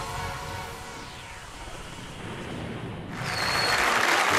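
Television theme music fading down, with a falling whoosh through it about a second in; at about three seconds a studio audience's cheering and applause swells up loudly.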